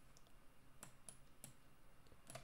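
Near silence with a few faint, sharp clicks, made as a letter is handwritten onto the computer screen.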